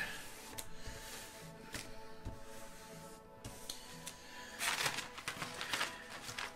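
Soft background music, with hands rubbing and pressing clear plastic film flat onto a paper map to work out air bubbles, and a louder rustle of the film sheet being lifted near the end.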